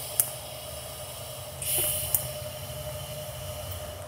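TIG welding arc hissing in two short tack welds on a formed steel header collector. The first tack ends just after the start and the second runs for about half a second from about one and a half seconds in; each stops with a click, over a steady hum.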